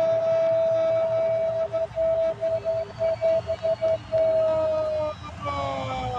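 A football commentator's long, held goal cry of "gol": one sustained note that breaks into quick pulses through the middle, then sags and stops about five seconds in.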